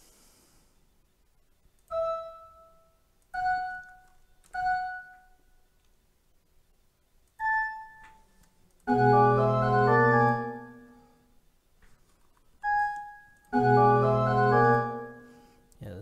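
Software pipe organ voice playing back from a music notation program: single notes sounding one at a time as notes in the score are clicked and repitched, and twice a short multi-voice passage of the fugue playing for about two seconds, near the middle and near the end.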